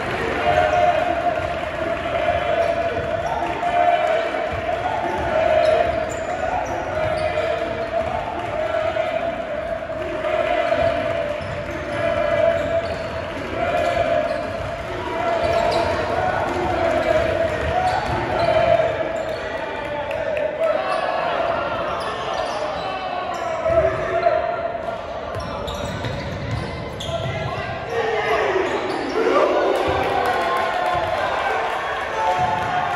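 A basketball being dribbled on a hardwood gym floor, with short repeated bounces, over the voices of players and spectators in the gym.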